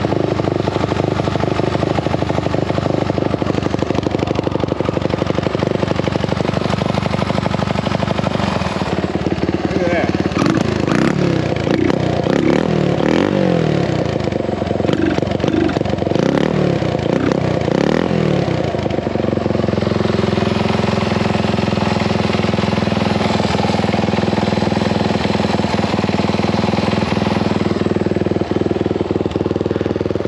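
1974 Honda XL175's single-cylinder four-stroke engine running just after a kick start, freshly fired after sitting unridden for over a week. It idles steadily, then about ten seconds in is revved up and down repeatedly for about ten seconds, before settling back to a steady idle.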